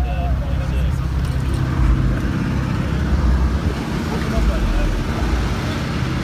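Deep, loud bass from two PSI Platform 5 subwoofers in a box tuned to 26 Hz, playing very low notes that swell and ease.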